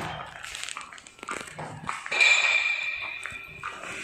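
A loud, steady, high-pitched whine lasting about a second and a half, starting about two seconds in, after a few short clicks and knocks.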